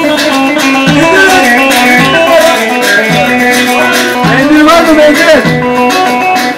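Turkish dance music played live on a Korg Pa-series arranger keyboard through a loudspeaker: a quick, ornamented melody with bending notes over a steady, driving beat.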